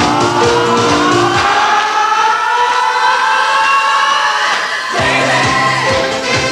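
Pop song with singing. About a second and a half in, the beat and bass drop out, leaving a long, slowly rising held line. The full band and beat come back in suddenly about five seconds in.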